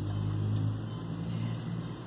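Low engine hum of a passing vehicle, loudest about half a second in and fading away toward the end.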